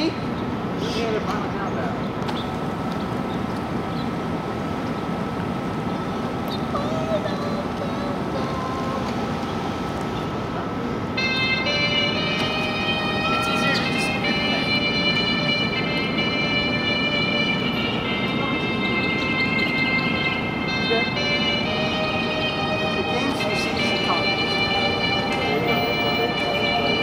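Steady mechanical hum with a thin constant whine from the garage-door-opener drive pulling the mascot cart slowly along its track. Music with clear, repeated high notes starts about eleven seconds in and plays over it.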